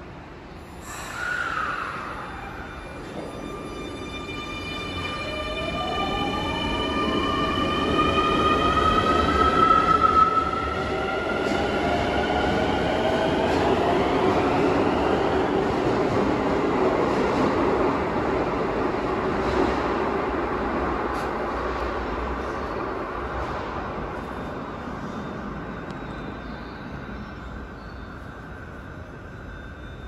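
A Keio subway train pulling out of an underground station platform: its traction motors whine in a set of tones that climb steadily in pitch as it gathers speed, over the rumble of its wheels on the rails. The sound is loudest about ten seconds in, then fades as the train leaves.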